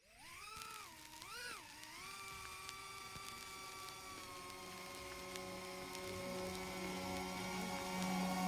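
Shendrone Squirt v2 cinewhoop's 6S brushless motors spinning the ducted props up for takeoff: a whine that rises, then swells and dips twice with the throttle in the first couple of seconds. It then settles into a steady whine that slowly grows louder as the drone flies.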